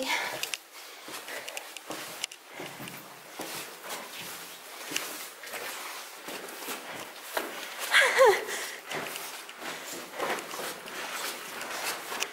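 Footsteps scuffing and knocking irregularly on concrete stairs and floor in a narrow passage. About eight seconds in, a short voice sound falling in pitch stands out over them.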